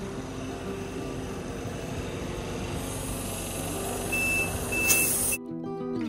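Petrol-station tyre inflator filling a car tyre: a steady hiss of air with two short high beeps about four seconds in, over background music. Near the end it cuts suddenly to plucked-string music.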